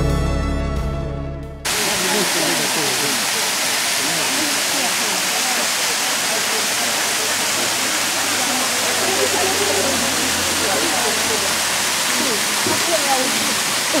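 Background music fading out over the first second and a half, then a sudden cut to the steady rushing of the Bigăr waterfall, water pouring over moss-covered rock into a pool.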